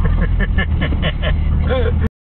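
A person laughing, about five short 'ha's in quick succession starting about half a second in, over the steady low drone of a car's engine and cabin as the car creeps along at walking pace.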